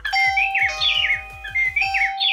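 Plug-in indoor chime of a ZemiSmart Wi-Fi video doorbell playing its ring melody after the doorbell button is pressed: quick rising and falling chirps over a held steady tone, the phrase starting again about a second and a half in.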